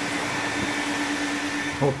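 Vacuum cleaner running steadily as a car's interior is cleaned at a car wash, a continuous rushing noise with a steady hum under it.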